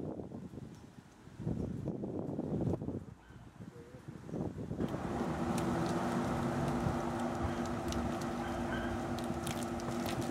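Outdoor street noise: low gusts of wind rumbling on the microphone, then from about halfway a steadier, louder rush with a low, even hum, like a running motor.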